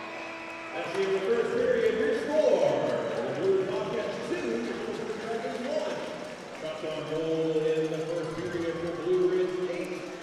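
Music over an ice rink's PA system: long held notes shifting in pitch every second or so, over a low wash of crowd noise in the arena.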